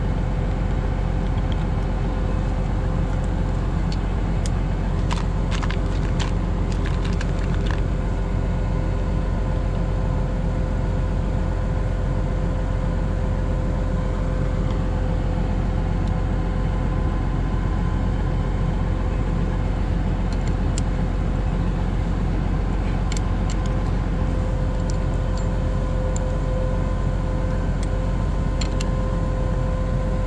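Tractor engine idling steadily, with scattered light metallic clicks of a wrench and grease nipples on the plough's steel, in clusters a few seconds in and again near the end.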